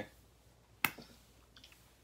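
A single sharp click about a second in, followed by a few faint ticks; otherwise near-quiet room tone.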